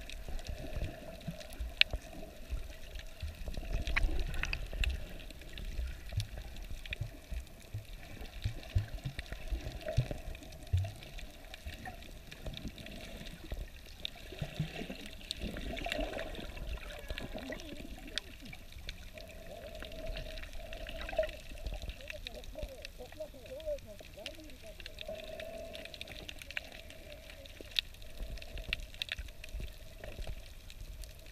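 Water heard from under the surface: muffled sloshing and bubbling, with scattered sharp clicks and a wavering muffled hum.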